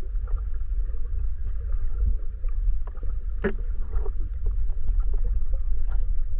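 Muffled underwater sound from a submerged GoPro: a steady low rumble of water moving past the camera, with scattered small clicks and a sharper knock about three and a half seconds in.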